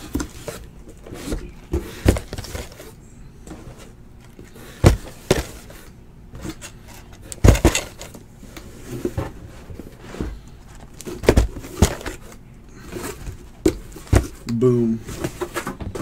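Cardboard hobby boxes being handled and set down on a table: a string of sharp knocks and thumps a second or more apart, with light handling noise between.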